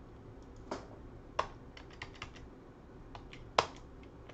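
Computer keyboard keys tapped in an irregular run of light clicks, with three louder strokes, as code is edited.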